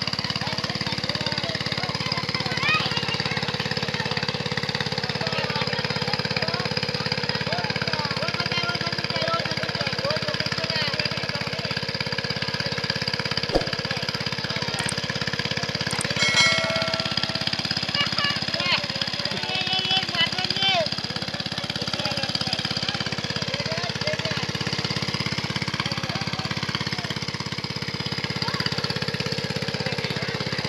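A small engine running steadily, with a fast even chugging, under people talking.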